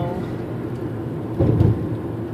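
Steady road and engine noise inside a moving car's cabin, with a brief low thump about one and a half seconds in.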